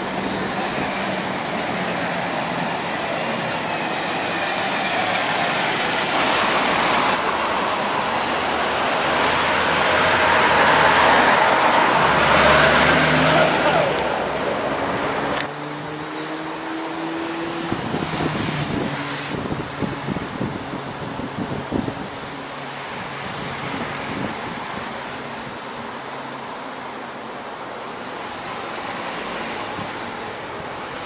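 Scania coach driving past close by on a city street, its diesel engine and tyre noise swelling to loudest about ten to thirteen seconds in. Then, after a sudden drop about halfway, quieter traffic noise with buses running further off.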